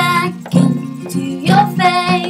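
A woman singing with strummed guitar accompaniment: a sung note at the start, guitar strums between, and a new sung phrase rising in near the end.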